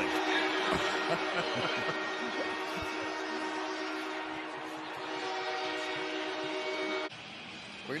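Stadium crowd cheering loudly after a touchdown, with a steady held chord of several tones sounding over the roar; both cut off abruptly about seven seconds in. A commentator laughs briefly about two seconds in.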